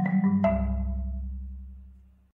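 Marimba played with four mallets: the last few notes of a piece are struck in the first half-second, then a low bass note rings on and fades away.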